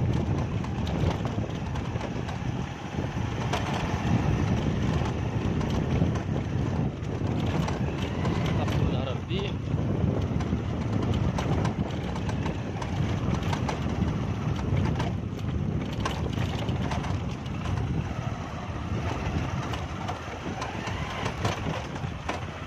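A vehicle running along a rough dirt road, with wind rumbling on the phone's microphone.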